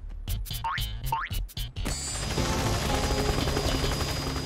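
Cartoon sound effects: a run of quick clicks and two short rising sweeps, then from about halfway a small cartoon helicopter starting up and lifting off, a steady rhythmic whir, with music.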